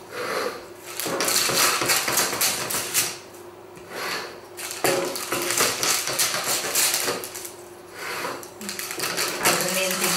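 Scissors cutting through baking parchment paper around a tart tin: quick snips and paper crinkling, in three stretches with short pauses between them.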